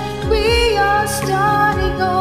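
Karaoke backing track of a pop ballad playing an instrumental passage between sung verses, with sustained melody lines over a drum beat.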